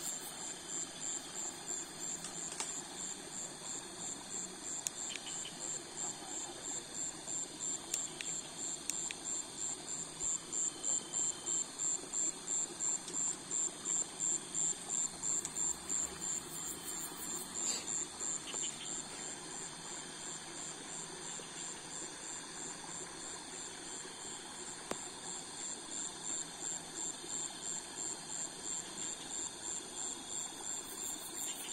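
Night insects calling in the undergrowth: a high, steady trill with a regular pulsing beat over a background hum of other insects. The beat grows louder in the middle and fades somewhat later on.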